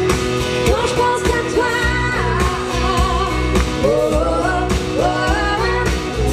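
Live band performance: a woman sings a melody over guitars, bass guitar and a drum kit.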